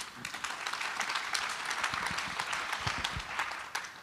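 Audience applauding, the clapping building over the first second and dying away near the end.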